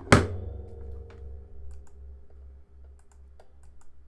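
A single thump just after the start whose ringing tone fades slowly, followed by a few scattered light clicks of a computer keyboard.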